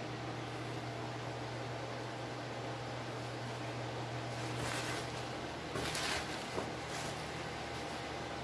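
Plastic bubble wrap rustling as a hand pushes it aside inside a cardboard shipping box, in two short bursts about halfway through, over a steady low hum.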